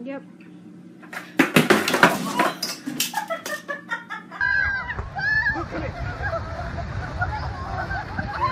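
A skateboarder falling onto a concrete garage floor: a rapid run of clattering knocks as the board and body hit the ground, lasting about a second and a half. Near the end come excited voices over a steady low rumble.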